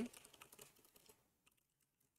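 Faint computer keyboard typing: a quick run of light key clicks that stops about a second in.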